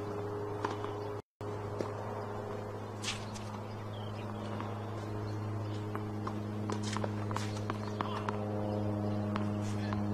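A steady low electrical-sounding hum, with scattered light taps and knocks over it that come more often in the second half.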